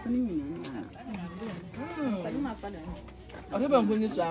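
Several women talking and exclaiming in a local language, with pitch rising and falling; one voice gets louder near the end.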